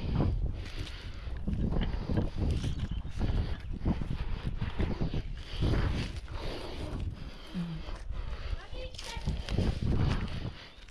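Irregular rustling, scraping and knocking of a climber's gloved hands and body against the bark and branches of a pine tree, over a low rumble.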